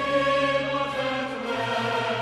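Choral theme music: a choir holding sustained chords, with instruments underneath.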